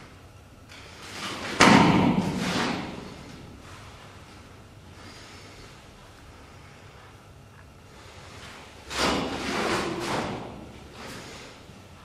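A taekwondo athlete's forceful breathing while performing the Keumgang poomsae: two sharp, loud exhalations with the rustle of a uniform, one a little under 2 seconds in and one about 9 seconds in, each lasting about a second.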